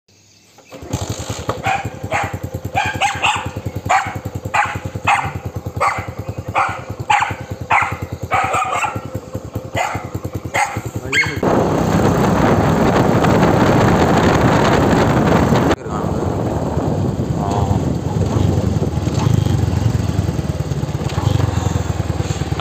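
A motorcycle engine running steadily, with a dog barking repeatedly over it for about ten seconds. Then a louder rushing noise takes over for about four seconds and cuts off suddenly, leaving the engine running.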